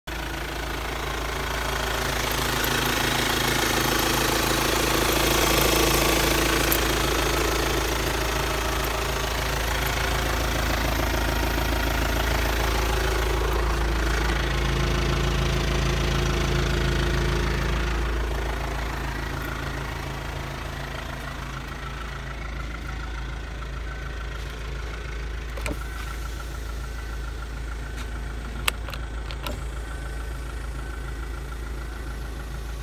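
2006 Kia Sportage's four-cylinder CRDi common-rail diesel engine idling steadily. It is louder for the first eighteen seconds or so, then drops in level, with a couple of sharp clicks near the end.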